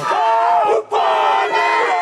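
A Māori haka: a group of men and women shouting a chant in unison, in two loud phrases with a brief break just before a second in.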